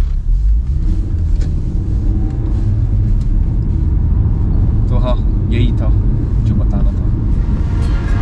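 Car cabin noise while driving: a steady, loud low rumble of engine and road. A few short higher sounds come through about five seconds in.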